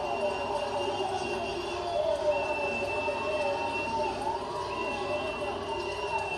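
Voices and crowd noise played through a television, with a high steady tone sounding three times, each lasting about a second and a half.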